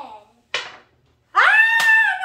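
A short sharp burst of noise about half a second in, then, near the end, a loud high-pitched excited scream from a person that rises and is held for about a second: a shriek of delight at rolling a Yahtzee.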